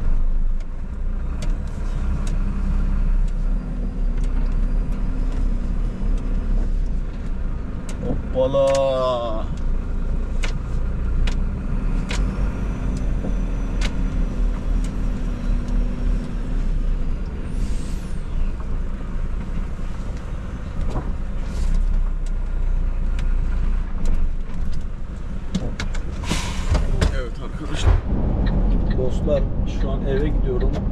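Diesel engine of an Iveco Stralis truck running steadily at low speed, heard from inside the cab while the truck is reversed into a parking spot. A short warbling pitched sound comes about nine seconds in, and a few short bursts of noise come later.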